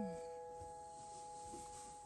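Background piano music: a held chord dying away quietly, with no new note struck.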